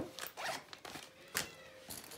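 The zipper of an Itzy Ritzy Boss backpack diaper bag being pulled in short strokes, with a sharp click about one and a half seconds in.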